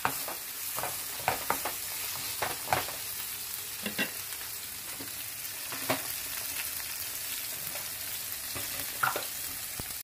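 Fish fillets and spinach with tomato frying in skillets with a steady sizzle. A wooden spoon stirs in the pan and knocks against it several times in the first few seconds, then once or twice later on.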